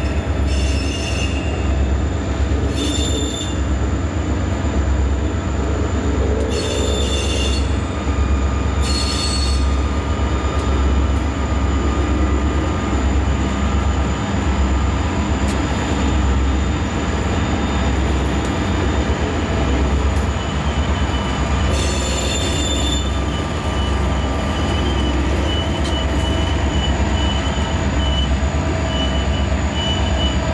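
Freight train's diesel locomotives rumbling steadily as the train rolls past. Short bursts of high-pitched wheel squeal come five times: about 1, 3, 7, 9 and 22 seconds in.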